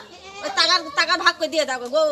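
Speech only: a woman's voice talking at a high pitch.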